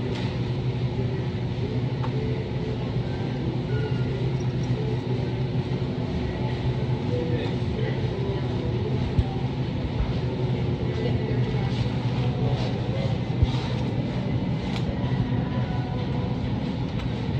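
Supermarket ambience: a steady low hum from the refrigerated display cases and ventilation, with faint distant voices and a few soft knocks and clicks in the second half.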